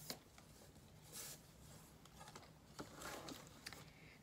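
Near silence, with a few faint soft rustles and scrapes as a polishing rag and a wooden sign are handled and set down.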